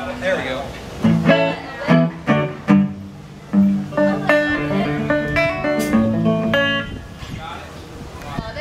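Banjo picked through the stage sound system. A few short plucked notes start about a second in, then a longer run of ringing notes follows and stops shortly before the end.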